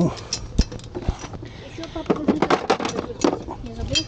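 Metal sockets and hand tools clinking as they are dropped and fitted back into a plastic socket-set case, a quick run of small clicks, with a low knock about half a second in.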